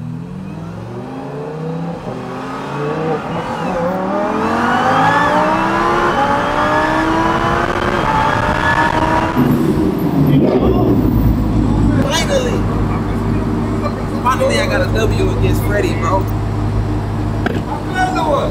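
Ram TRX's supercharged V8 and a Lamborghini accelerating hard side by side in a roll race, engine pitch climbing for about nine seconds with small breaks at the upshifts. About nine and a half seconds in, this gives way to a steady low engine idle.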